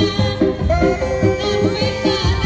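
Sundanese reak procession music: steady rhythmic drumming with sustained tones and a high, wavering melody line over it.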